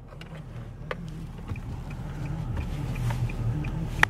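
Low hum inside a car cabin that slowly grows louder, with faint rapid ticking at about four a second and a single sharp click about a second in, as hands work a stuck charger loose at the steering wheel.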